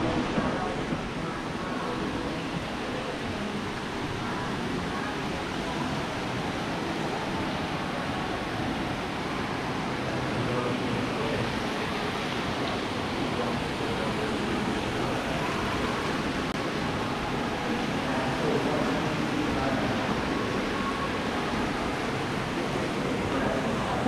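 Steady rushing background noise of a hotel's indoor public space, with faint, indistinct voices in the distance.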